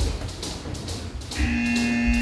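Background music with a beat, then about one and a half seconds in a steady electronic buzzer tone starts and holds for about a second: a boxing gym's round timer sounding.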